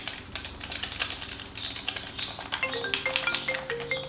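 Rapid clicking of game-controller buttons, and from about two and a half seconds in a phone ringtone begins, a short melody of marimba-like notes.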